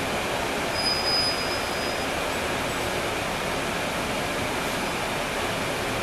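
Cabin noise heard from the rear of a NJ Transit NABI 40-SFW bus, with its Cummins ISL9 diesel engine running and the bus rolling slowly. A brief high-pitched squeal comes about a second in.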